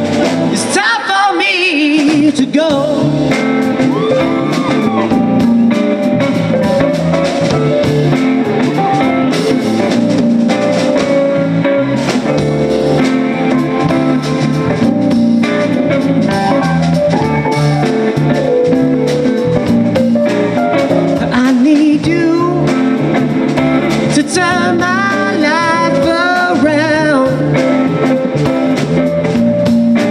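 Live rock band playing an instrumental passage between vocal lines: electric guitar over drums and bass, with the guitar line bending and wavering in pitch near the start and again near the end.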